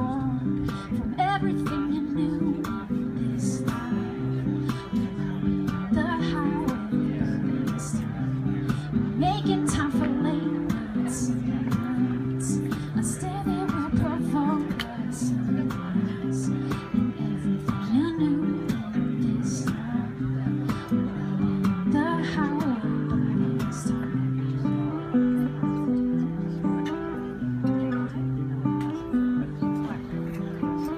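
Solo acoustic guitar playing an instrumental: picked notes and a moving bass line, punctuated by sharp percussive slaps on the strings.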